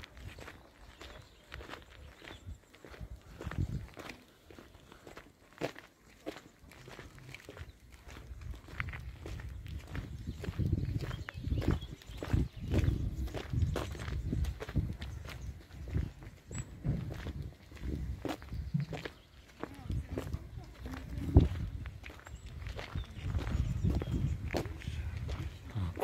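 Footsteps of people walking on a gravel road: a run of short crunching steps throughout, over a low uneven rumble.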